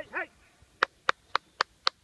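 Five sharp hand claps, about four a second, calling a dog in.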